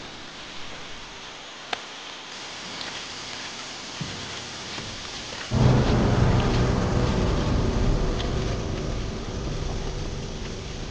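Film soundtrack: a steady hiss, then about five and a half seconds in a sudden deep rumble comes in and holds.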